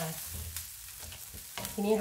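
Fresh shrimp heads frying in oil in a stainless steel wok, sizzling quietly while a wooden spatula stirs and scrapes them around the pan. This is the oil-frying stage of making shrimp oil.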